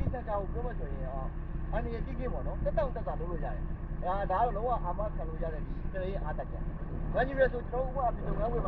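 Diesel engine of a Hino truck running at a steady low drone, driving the hydraulics of the Tadano truck-mounted crane as its hook is lowered.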